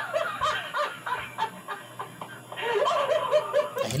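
A person laughing in two runs of short, high-pitched giggles, the second starting between two and three seconds in.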